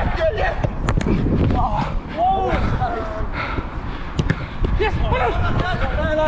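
Footballers shouting and calling out across the pitch over the rumble of wind and running on a body-worn GoPro microphone, with two sharp knocks of the football being kicked, about a second in and again just past four seconds.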